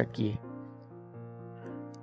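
Soft background music of sustained keyboard chords, the chord changing about a second in, with the tail of a man's narration at the very start.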